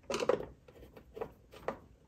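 Light clicks and knocks of a screwdriver and hands on the plastic base of a Riccar 8900 upright vacuum as the base-plate screws are tightened snug: a cluster of knocks at the start, then two lighter ones.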